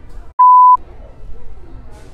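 A censor bleep: one steady, high pure beep lasting under half a second, a little way in. All other sound is cut out while it plays, as when a spoken word is bleeped out in editing.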